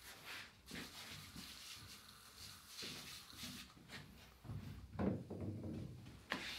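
Faint workshop handling sounds: a few short hissing sprays of furniture polish onto the table top, with soft footsteps and knocks, the loudest about five seconds in.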